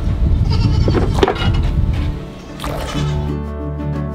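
Goats bleating over background music; the music takes over near the end.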